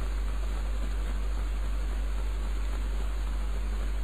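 Steady background hiss of an old recording with a constant deep hum underneath; no speech.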